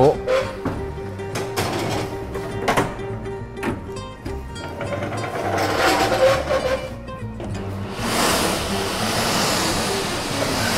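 Background music throughout. About eight seconds in, a loud steady hiss sets in: steam being injected into the hot Ramalhos deck oven as the baguettes go in to bake.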